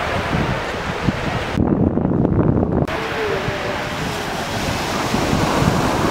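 Wind rushing over the microphone with surf noise behind it and faint voices. About a second and a half in, a stronger low rumble of wind buffeting lasts about a second and muffles the rest.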